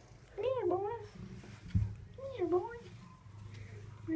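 Domestic cat meowing twice, each call rising and then falling in pitch, with a short thump between them.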